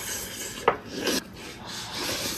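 Close-up eating sounds of braised pork trotter and rice being chewed and slurped, with a sharp click a little way in.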